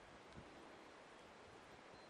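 Near silence: a faint, steady outdoor background hiss, with one soft low bump about half a second in.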